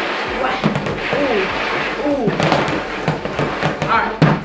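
Excited human voices making wordless, drawn-out calls that waver up and down in pitch, twice, over a steady background of room noise.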